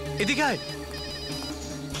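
A voice calls out once about a quarter-second in, in a drawn-out falling cry, over a steady low drone of background score.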